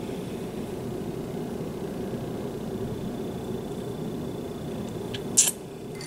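A steady low rumble that drops slightly after a short, sharp hiss about five and a half seconds in.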